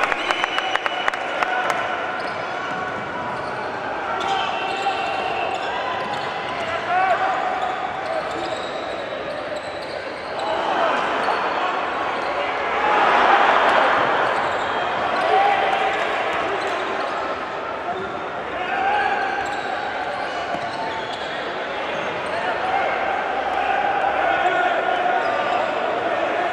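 Live basketball in an indoor gym: a basketball bouncing on the hardwood court, with shouting voices of players and spectators echoing in the hall throughout. There is a run of quick bounces near the start and a swell of crowd noise about halfway through.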